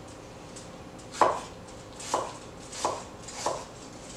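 A kitchen knife chopping on a cutting board, four separate strokes spaced about half a second to a second apart.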